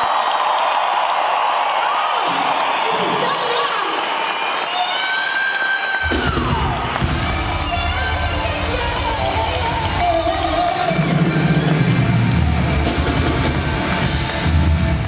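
Arena crowd cheering over live pop music. About six seconds in, the band's bass and drums come in heavily.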